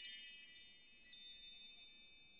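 Chime sound effect of a logo sting: a cluster of high ringing tones struck together at once, fading away over about two seconds, with a few small tinkles about a second in.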